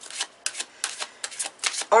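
A tarot deck shuffled by hand: a quick run of short card slaps, about five a second.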